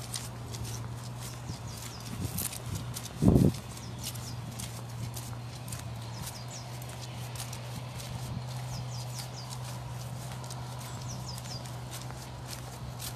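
Footsteps squelching along a wet, muddy grass path at a walking pace, over a steady low hum. A single loud low thump, such as a knock on the microphone, comes a little over three seconds in.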